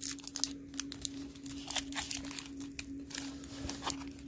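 Clear plastic tape crinkling and crackling as fingers press it down over metal pin backs on a piece of cardboard: a string of irregular small crackles and clicks, over a steady low hum.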